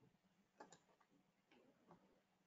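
Near silence broken by a few faint computer-mouse clicks, the first pair about half a second in and more scattered through the rest.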